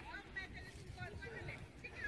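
Faint voices of several people talking and calling out at a distance, over a low steady rumble.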